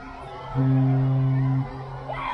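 The Carnival Sunshine's ship horn giving a steady, low blast about a second long, starting about half a second in.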